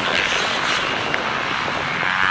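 Several motocross bikes' engines running at race speed, a steady blurred engine noise.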